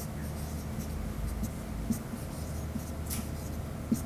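Chalk writing on a blackboard: faint, short scratches and light taps as symbols are written, over a steady low hum in the room.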